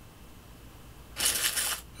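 macOS Empty Trash sound effect: a short paper-crumpling noise about a second in, over faint room tone.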